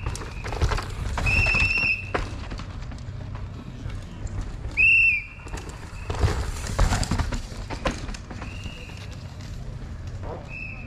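Three sharp whistle blasts, a warning that a downhill mountain bike rider is coming through. Between them come the clatter and rush of the bike's tyres and suspension over dirt and rocks, loudest around one second in and again from about six to eight seconds in.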